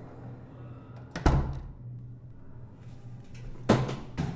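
A door slamming shut about a second in, with a heavy low thud, then a second sharp bang near the end, over a steady low hum.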